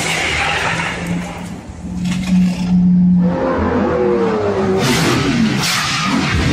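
A supercar's engine revving hard as the car accelerates away down the street. A steady engine note builds for about three seconds, then the pitch wavers and falls.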